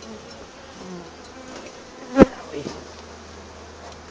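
Honeybee colony humming in an opened hive, with one sharp knock about halfway through.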